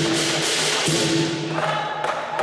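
Chinese lion dance percussion band of drum, gong and cymbals playing, with a steady ringing undertone and cymbal crashes about twice a second. Voices from the crowd start to rise near the end.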